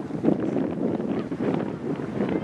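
Wind on the camera microphone, a steady rushing noise.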